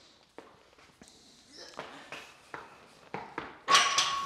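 Soft shuffling footsteps and light taps, then near the end a sudden metallic clank with a steady ringing tone as a safety squat bar is lifted off the squat rack's hooks.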